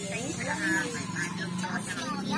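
Voices talking in the background over a steady low hum.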